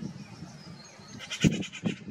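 A short, high-pitched rattling animal call of about eight quick pulses, lasting under a second, past the middle, with two low thumps under it.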